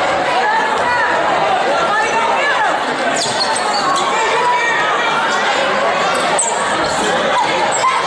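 A basketball being dribbled on a hardwood gym floor during a game, against steady crowd chatter and shouting from the bleachers, echoing in the gymnasium.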